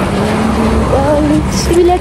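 A woman's voice, words not made out, over a steady low rumble.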